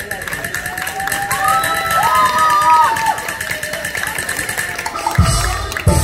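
Live Taiwanese opera stage music: a long held, gliding note, sung or played, over a faint steady high tone, with drums coming in near the end.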